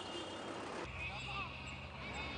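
Faint street traffic: a steady low vehicle engine rumble comes in about a second in.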